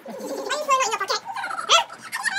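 A young girl's high-pitched squeals and giggles while she is hugged and played with, with a sharp rising squeal, the loudest sound, near the end.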